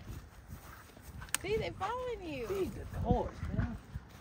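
Indistinct high-pitched voices, short utterances rising and falling in pitch, after a single sharp click about a second in, over a low rumble.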